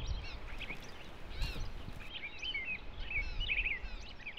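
Several songbirds chirping and singing in quick, overlapping short calls, over a low outdoor rumble.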